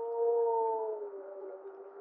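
Gray wolf 1048M howling: one long, low howl already under way, swelling slightly just after the start, then dropping a little in pitch and fading away in the second half. In this howl the second harmonic is louder than the fundamental, which slightly changes its quality, and the fundamental sits lower than in most wolf howls, in keeping with a heavy male.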